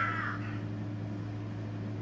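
A steady low hum, with the end of a shrill high cry fading out in the first half second.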